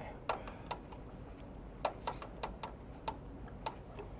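Light, sharp clicks and ticks, about ten at uneven intervals, from a fly-tying bobbin and thread being wrapped forward along a hook held in a vise.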